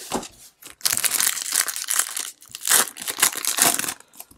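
Foil wrapper of a Topps Chrome trading-card pack crinkling and crackling as it is handled and torn open, after a few light clicks in the first second.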